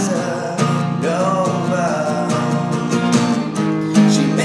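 Acoustic guitar strummed steadily with a man singing over it.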